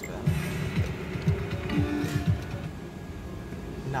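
Alien-themed video slot machine playing its electronic reel-spin sounds after the spin button is pressed: a quick run of short falling tones for about two seconds, then quieter. The spin ends without a win.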